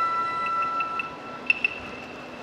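Japanese festival music: a long held flute note over a quick light ticking, which stops about a second and a half in and is followed by two sharp strikes in quick succession.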